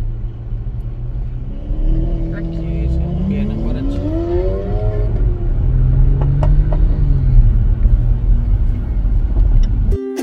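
A car engine revving, its pitch climbing steadily for about three seconds and then dropping back, over a steady low rumble of engine and road noise heard from inside a car in traffic.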